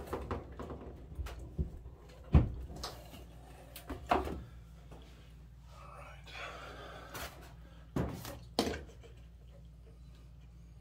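Knocks and clunks of hands working on a Maytag dryer's control console while its timer is replaced. A sharp knock about two and a half seconds in is the loudest, with more knocks around four and eight seconds and a stretch of rustling between them.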